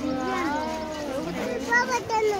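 Background voices of people, with a high voice drawn out in long rising and falling pitch.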